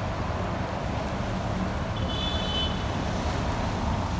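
Steady road traffic on a wet city avenue, with cars passing. About two seconds in there is a brief high-pitched squeal lasting under a second.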